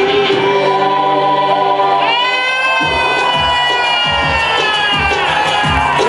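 A live world-fusion band playing. About two seconds in, a long held note enters and slowly sinks in pitch. Drum strokes come in soon after.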